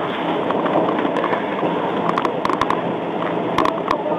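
Steady rushing background noise over the recording mic, with a few short clicks and knocks about halfway through and again near the end.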